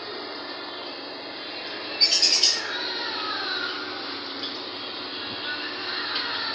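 A flock of lovebirds chattering and chirping steadily, with a loud, shrill screech about two seconds in, followed by a few falling calls.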